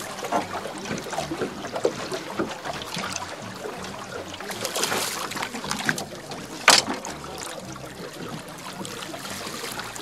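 Water lapping and sloshing against the side of a small fishing boat, with small handling clicks and one sharp knock about two-thirds of the way through.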